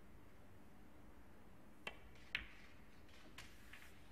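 Snooker cue tip striking the cue ball, then about half a second later a louder, sharp click as the cue ball hits the object ball, followed by a few faint knocks as the balls run on and one is potted. Otherwise a hushed arena.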